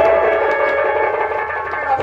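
Instrumental music from a live folk stage band: a melody instrument playing held notes, with light drum strokes underneath.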